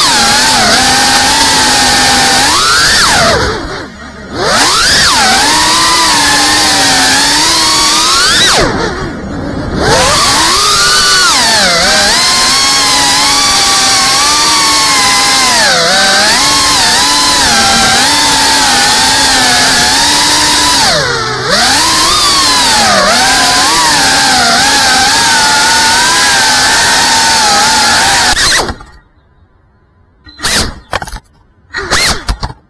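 FPV quadcopter's brushless motors whining, the pitch rising and falling with the throttle, with short throttle cuts about 4, 9 and 21 seconds in. The motors cut out suddenly near the end as the quad crashes.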